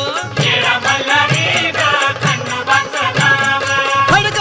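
Marathi devotional song music with a steady drum beat, about two beats a second, under a melodic line.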